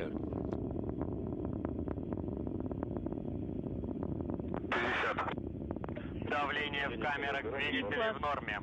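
Soyuz booster's first-stage and strap-on booster engines during ascent: a steady low rumble full of sharp crackles, heard through the launch broadcast feed. A short loud burst comes about five seconds in, and a voice comes in near the end.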